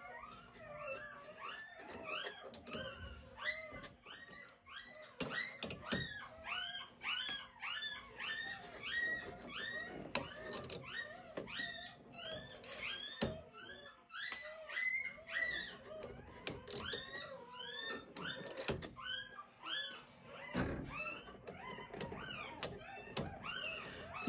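A litter of newborn golden retriever puppies squeaking and whimpering: many short, high-pitched cries, several a second and overlapping throughout. A few sharp clicks come from small printer parts being handled.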